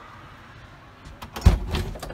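A front door being unlatched and pulled open: a few clicks, then a thump about one and a half seconds in, with smaller clicks after it.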